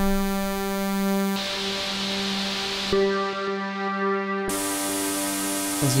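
Bitwig Polysynth holding a sustained chord while a ParSeq-8 step modulator changes its sound in abrupt jumps about every one and a half seconds. A hissy noise layer cuts in and out, and some of the tones shift at each step.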